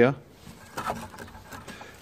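A man's voice finishing a word, then a quiet pause with a few faint clicks.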